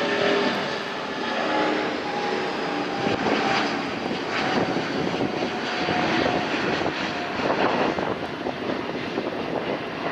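Twin Rolls-Royce Trent XWB turbofans of an Airbus A350-900 at takeoff thrust as the jet climbs out overhead: a loud, steady jet noise with a rough crackle and faint tones that slide a little lower. It eases slightly near the end as the aircraft moves away.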